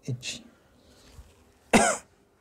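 A single short, loud cough near the end.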